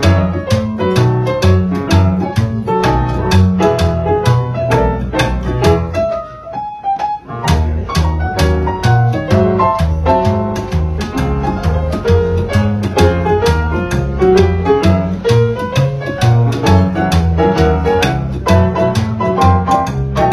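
Live jazz piano and upright double bass playing an instrumental break, with no singing; the bass line is strong and steady under the piano. The music thins out briefly about six seconds in, then both pick up again.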